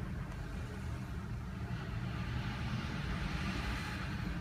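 Car interior noise while creeping in slow city traffic: a steady low engine rumble heard inside the cabin, with a rushing hiss that builds toward the end.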